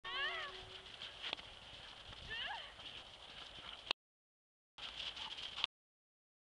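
Two short, high, wavering calls about two seconds apart over a steady hiss, the first falling in pitch. The sound then cuts out to dead silence twice.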